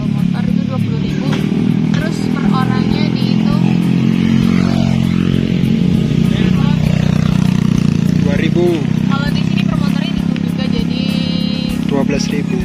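A vehicle engine, likely a motorcycle, running steadily throughout, under people talking and background music.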